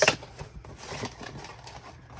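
Thin cardboard box being opened by hand: the lid lifted and the flaps folded back, with scattered light clicks and scrapes of card.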